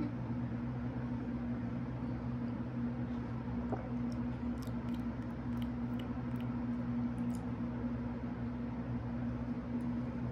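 A steady low electrical hum in a quiet room, with a few faint small ticks and clicks about halfway through and again later.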